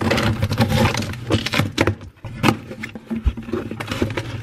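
Scissors blade slicing along the packing tape on a cardboard shipping box, a dense scraping, ripping noise for about two seconds. This is followed by separate knocks and cardboard clicks as the box is handled and its flaps opened.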